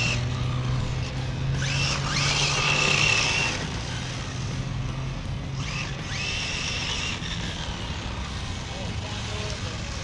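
Radio-controlled drift cars' electric motors whining on asphalt, with two rising whines as the cars accelerate, about one and a half and six seconds in, over a steady low hum.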